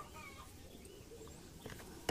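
Quiet background with a few faint animal calls, short gliding calls in the first second or so.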